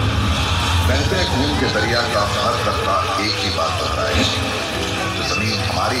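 A voice speaking over background music.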